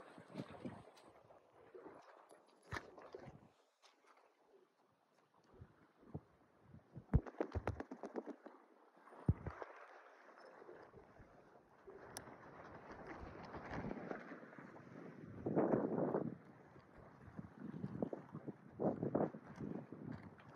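Scattered clicks and knocks from handling a fishing rod and line, with footsteps crunching on rocks and coral gravel. A quick run of clicks comes a little past the middle, and uneven crunching follows in the second half.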